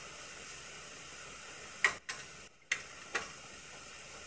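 Faint steady hiss of an open microphone, broken by three short sharp clicks a little under two seconds in, near the three-second mark and just after.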